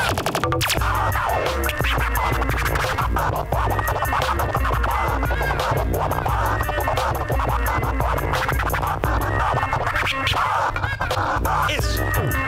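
Turntablist scratching records on two turntables and a mixer over a bass-heavy beat, the scratches gliding up and down in pitch and chopped by rapid crossfader cuts.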